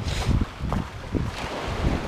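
Wind rumbling and buffeting on the microphone, with a faint wash of surf and a few soft knocks scattered through.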